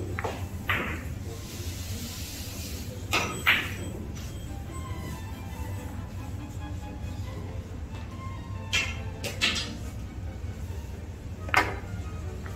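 Carom billiard balls clicking: the cue tip striking the cue ball and the cue ball tapping the object balls, in about four short soft series shots, pairs of sharp clicks a fraction of a second apart. Background music runs underneath.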